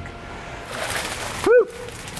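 Water rushing and splashing into an aquaponics fish tank, cutting off abruptly. Right after comes a short, loud pitched call or squeak that rises and falls once.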